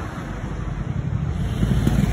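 Wind buffeting the microphone over a low, rough street rumble, growing a little louder near the end.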